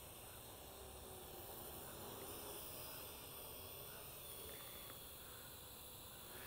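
Faint steady hiss, close to silence, with no distinct sound events.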